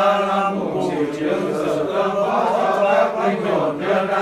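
Voices chanting a Vietnamese Catholic prayer for the dead in a sung, intoned recitation, continuous and without pauses.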